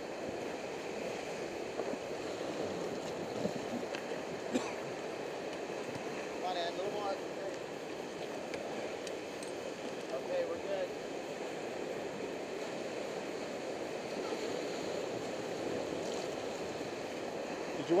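Rushing river rapids: a steady churning whitewater noise around a raft moving through them, with a few faint, brief voices.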